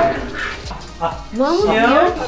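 Background music with a steady beat, and near the end a small dog's short, rising whines.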